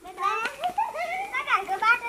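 A child's high voice, drawn out and wavering up and down in pitch in a sing-song way, with a short break about three quarters of the way through.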